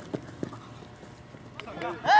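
Two quick knocks of a soccer ball being touched by a dribbling player's foot, about a third of a second apart. Voices begin calling out near the end.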